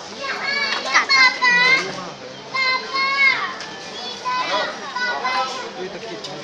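Children's high-pitched excited shouts and squeals, coming in repeated short calls, loudest in the first half.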